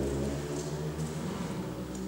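A pause in a man's speech: the last of his voice fades out at the start, leaving a steady low hum of room tone.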